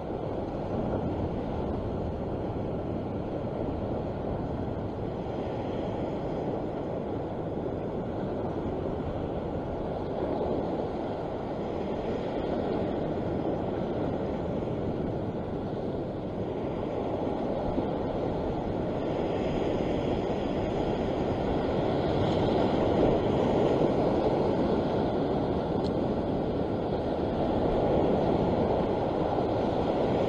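Steady rush of wind on the microphone mixed with sea surf washing on the rocks, swelling a little in the second half.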